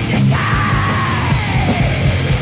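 Heavy metal band demo recording: distorted guitars and drums, with a long yelled vocal that slides downward in pitch.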